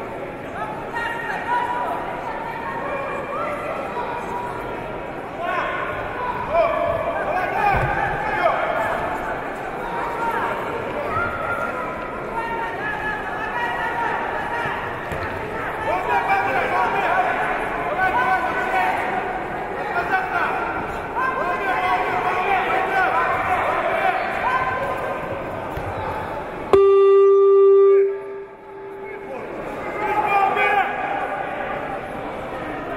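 Indistinct voices shouting and talking in a sports hall through a judo bout. Near the end a loud electronic scoreboard buzzer sounds one steady tone for about a second and cuts off sharply: the signal that the contest has ended by ippon.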